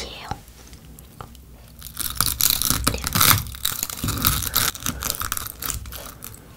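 Brittle caramelized spun-sugar (angel-hair candy) crackling and snapping as a spoon breaks into the candy bowl. The run of dense, sharp crackles starts about two seconds in.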